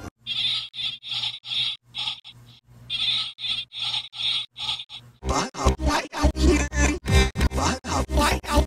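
A short, identical sound effect repeated in a rhythmic loop, about three times a second, with a brief dip near the middle. About five seconds in, loud electronic music with a heavy bass beat takes over.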